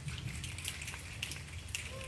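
Light, scattered audience applause: many irregular hand claps.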